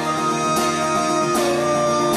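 Steel-string acoustic guitar strummed in a steady rhythm, with a held higher note over it that slides down in pitch about halfway through.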